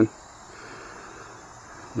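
Steady, high-pitched chorus of insects over a faint, even background hiss.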